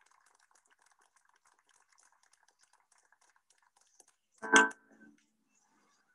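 Faint, broken-up music from a gamelan-and-Western-instruments performance video, heard through a video call. About four and a half seconds in there is one loud, short struck sound that rings briefly.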